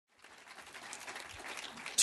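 Audience applauding, fading in from silence just after the start and growing slightly louder.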